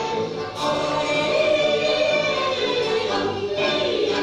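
Choir singing with music from the show's soundtrack, with long held notes.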